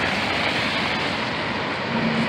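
Steady rushing noise of floodwater flowing across the road, mixed with traffic noise. A low engine hum from the cement mixer truck comes in near the end.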